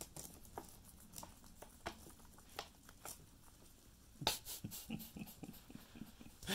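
Guinea pigs munching leafy greens: faint, irregular crisp chewing clicks and leaf tearing, busier and louder from about four seconds in.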